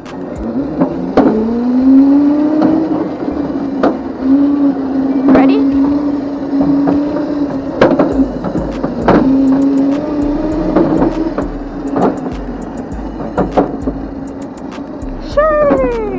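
Razor Crazy Cart XL electric drift kart's motor whining as it drives along a concrete path, its pitch rising about a second in and then holding steady, with scattered knocks and clicks. Near the end comes a short squeal that falls in pitch as the kart slides.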